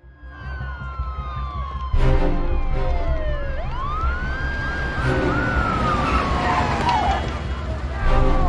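Police siren wailing in slow sweeps, falling, rising and falling again, over film-score music with a pulsing low beat. The music swells suddenly about two seconds in.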